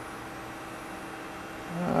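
Steady room tone: an even hiss with a faint steady hum and no distinct events. A man's voice begins near the end.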